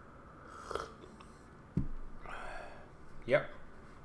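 A man sipping a drink from a mug, with a low thump a little under two seconds in, then a breathy exhale and a short voiced grunt near the end, the loudest sound.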